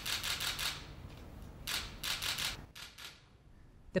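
Camera shutters clicking in quick runs of several clicks a second, with two main runs and a short third one near the end.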